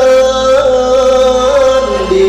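Male singer holding one long sung note that wavers slightly, in a qasidah song accompanied by violin, keyboard and oud.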